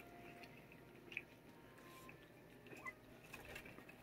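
A cat chewing a dry treat: faint, scattered crunching clicks.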